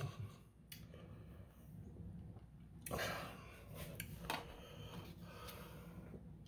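A man breathing in a quiet room after eating very hot chili sauce, with one rush of breath out about three seconds in. A couple of light clicks come near the start and just past four seconds.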